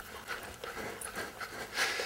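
Heavy breathing during a ridden trot, with a louder breath near the end.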